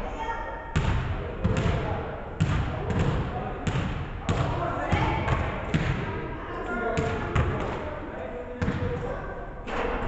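Basketball bouncing on a hardwood gym floor: a run of sharp bounces, roughly one and a half a second and a little irregular, each echoing in the large hall. Voices murmur in the background.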